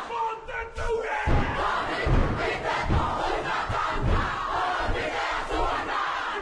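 Kapa haka group performing a haka: many men's and women's voices shouting and chanting in unison, with heavy rhythmic thumps of stamping feet about twice a second. The voices drop briefly in the first second before the full chant and stamping come back in.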